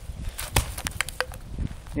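A rock brought down onto a flattened, empty aerosol can: one sharp impact about half a second in, then a few lighter clicks over the next second.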